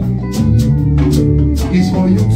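Live band playing an instrumental passage: bass guitar and guitar over a steady beat, with regular sharp percussion strokes a few times a second.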